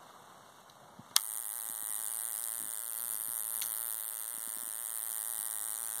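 A switch clicks about a second in and an electronic spark igniter starts up, firing spark plugs rapidly and continuously: a steady electric buzz with a high hiss.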